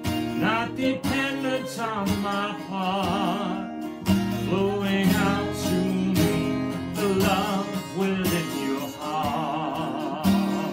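A man singing long held notes with vibrato while playing an acoustic guitar.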